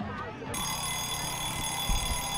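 A steady, high-pitched electronic buzzer or alarm tone that starts suddenly about half a second in and holds for about two seconds, with a thump near the end.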